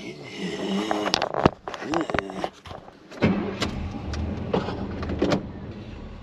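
Chevrolet 305 V8 of a 1987 truck running, with a short laugh about two seconds in. About three seconds in the engine's rumble grows deeper and louder and then holds steady.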